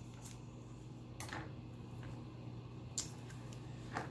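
Scissors cutting through a thick twisted rope: a few short snips, the clearest just after a second in and near three seconds, over a faint steady hum.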